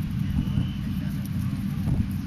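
A steady low outdoor rumble with faint voices in the background.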